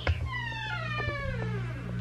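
A single gliding tone falling steadily in pitch over about a second and a half, an edited-in sound effect, over steady low background music.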